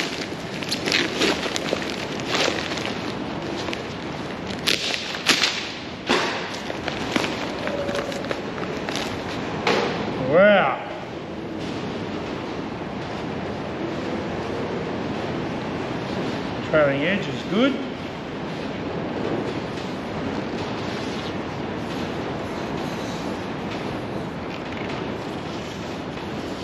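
Newspaper wrapping being torn and crumpled off a wooden propeller: a run of crackly rustles through the first six seconds over a steady background hiss. A short voiced exclamation about ten seconds in is the loudest sound, with another brief vocal sound near 17 seconds.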